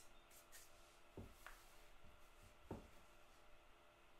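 Near silence with faint handling sounds: two soft knocks, about a second in and near three seconds in, as hands drop chopped pecans into a plastic mixing bowl of crust dough.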